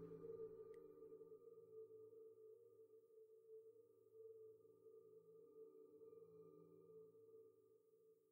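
Faint ambient background music: a few sustained droning tones that slowly fade out.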